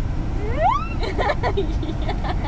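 Steady low rumble of a car's interior on the road, with a person's voice rising in pitch about half a second in, then short broken vocal sounds.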